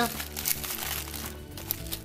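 Plastic postal mailer packaging crinkling and rustling as it is handled and opened by hand, with quieter crackles near the end. Background music plays underneath.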